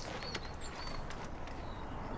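Quiet outdoor ambience with a few short, high bird chirps and a faint click or two.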